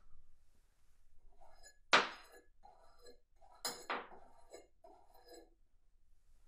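A bristle hairbrush scrubbed back and forth over a metal spoon, the bristles scratching and the spoon clinking. Sharp clinks come about two seconds in and twice close together just before the four-second mark, with a faint metallic ring.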